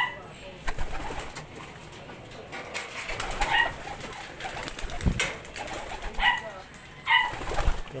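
Pigeons in a loft: three brief calls in the second half, with a couple of short low knocks.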